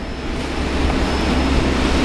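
Fishing boat running underway: a steady rush of wind and churning water over the low, even drone of the boat's engine.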